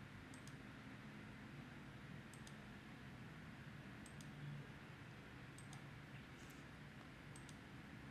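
Faint computer mouse button clicks, about five of them spaced a second or two apart, each a quick double tick of press and release, over near-silent room tone.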